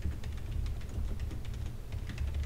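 Computer keyboard being typed on: a quick run of light keystrokes, about five a second.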